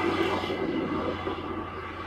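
Low engine drone of a passing vehicle, swelling at the start and slowly fading, over a steady low hum.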